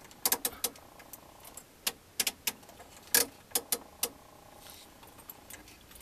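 Detented control knobs on a Tektronix 2213 oscilloscope being turned: about a dozen sharp clicks in small irregular groups over the first four seconds, as the timebase is set to show the sine wave.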